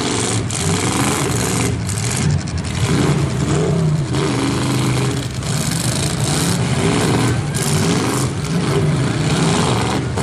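Demolition derby cars' engines running and revving, several at once, their pitch rising and falling.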